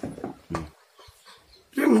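A short quiet gap holding one brief, faint unidentified sound about half a second in, then a man starts speaking near the end.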